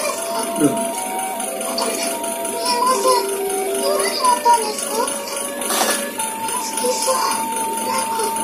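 Anime episode soundtrack: a girl's voice speaking Japanese dialogue in short lines over background music of long held notes.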